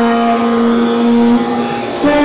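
A girl singing into a microphone, holding one long steady note that fades about one and a half seconds in.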